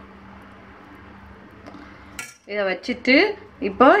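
Low steady room hum, then about halfway a single sharp clink of a steel spoon against a steel pot.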